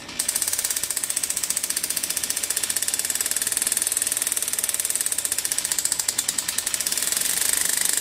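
Flex-shaft hammer handpiece rapidly tapping a ring's channel setting: a fast, even rattle of metal-on-metal strikes, many per second, growing a little louder near the end. It is peening the channel wall down to tighten a reset diamond on the side where it sat a little high.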